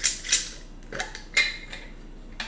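A glass jar and a metal utensil clinking as they are handled: about four light, sharp clinks in two seconds, some with a short ring.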